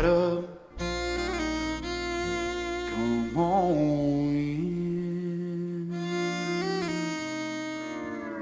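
Slow country instrumental passage: a pedal steel guitar holds long notes that slide in pitch, over strummed acoustic guitars.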